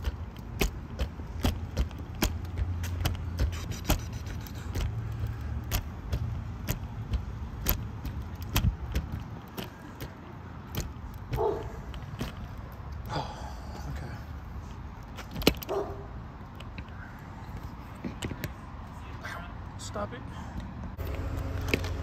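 Knee scooter rolling along a concrete sidewalk: a steady low rumble from its wheels, with frequent sharp clicks and rattles.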